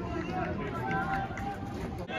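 Voices calling and talking across a football ground, with a few held shouts over a low outdoor rumble.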